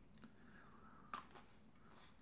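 Near silence: room tone, with one brief faint click a little after a second in.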